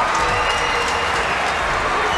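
Steady crowd noise from spectators filling an ice hockey arena.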